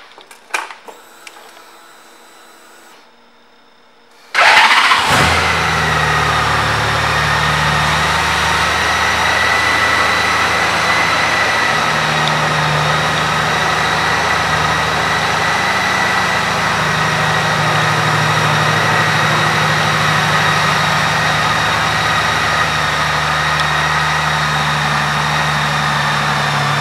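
2014 Honda Valkyrie's 1,832 cc flat-six engine started about four seconds in, catching at once, then idling steadily to the end, with a steady high whine over the idle. Before the start, a few seconds of low-level quiet with a few faint clicks.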